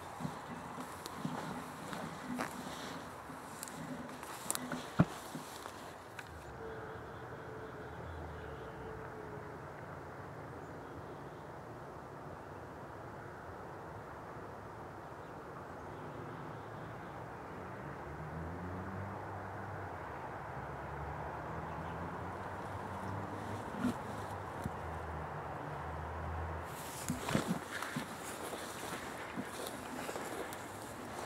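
Footsteps and rustling through frost-covered dry weeds and brush, with crackling clicks, for the first several seconds and again near the end. In between it is quieter: a faint low hum whose pitch shifts slowly.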